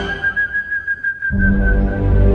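Background score: one high note held steady, with a low drone coming in a little past halfway.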